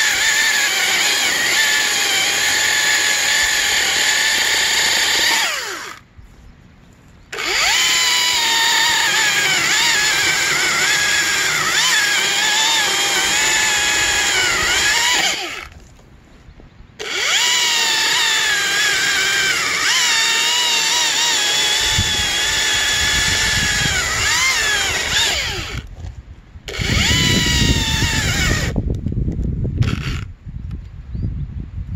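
Husqvarna battery-powered top-handle chainsaw running and cutting ash logs: a high electric whine that sags in pitch as the chain bites into the wood, in three runs separated by two short pauses. A deeper, rougher noise joins near the end.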